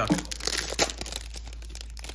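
Clear plastic wrapper of a trading-card pack crinkling and tearing as it is peeled off the stack of cards: a run of small crackles with one sharper crack about a second in.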